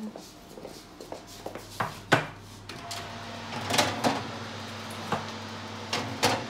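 Oven door opened and metal cake tins set and slid onto the oven's wire rack: a string of knocks, clacks and scrapes, the loudest knock about two seconds in and a cluster of clatters near four seconds.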